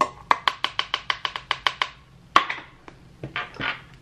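A jar of Coty Airspun loose translucent setting powder being tapped: about a dozen quick, sharp taps in a steady rhythm, then one louder knock and two brief brushing swishes near the end.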